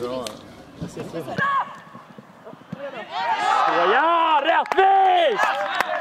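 Men shouting on a football pitch: loud, drawn-out yells that rise and fall in pitch, starting about three seconds in and lasting a couple of seconds, after quieter voices and a few sharp knocks.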